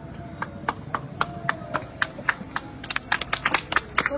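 A small audience clapping after a piano piece ends: at first a few steady claps, about four a second, then denser clapping as more hands join about three seconds in.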